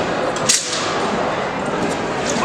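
A single quick whoosh about half a second in, a nandao (southern broadsword) blade cutting through the air, over the steady murmur of a large hall.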